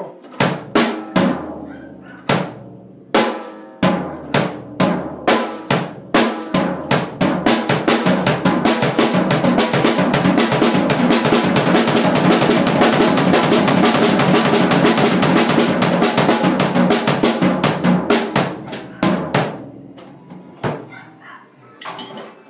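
Acoustic drum kit played with sticks. It opens with separate snare and bass drum hits about two a second. About six seconds in, the hits speed up into a fast, continuous roll of alternating right-left strokes, held for about ten seconds before breaking back into separate hits near the end.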